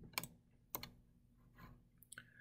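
Faint clicks from working a computer: two sharp clicks about half a second apart, then a softer one near the end.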